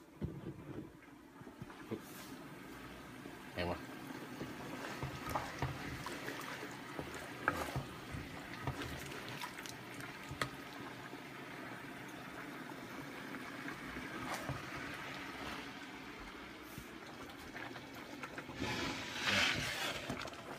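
Liquid gravy simmering and bubbling in a wok while it is stirred with a wooden spatula, with scattered light knocks of the spatula against the pan. The sound grows louder for a moment near the end.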